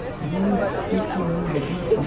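People talking close by, a voice or two of conversational chatter that the recogniser did not write down.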